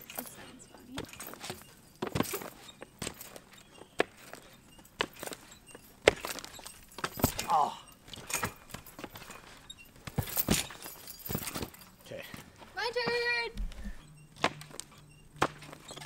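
Skateboard deck clacking and slapping against a trampoline mat as it is kicked into flips and landed on: a string of sharp, irregular knocks, loudest about six and ten seconds in.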